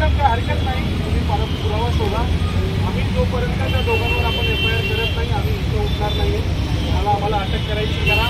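Several people talking at once, their voices indistinct, over a steady low background rumble.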